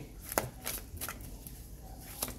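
A deck of oracle cards being shuffled by hand: a few sharp card clicks, strongest in the first second, then fainter.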